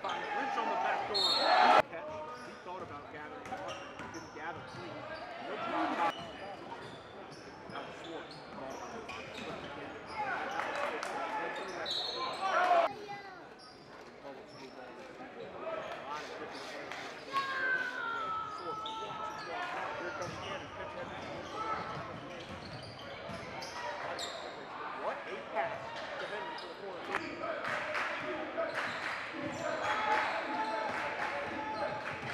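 Live gym sound of a high school basketball game: a basketball dribbling on the hardwood floor amid shoes on the court and the voices of players and spectators, echoing in a large gym. It grows louder twice, about two seconds in and near the middle.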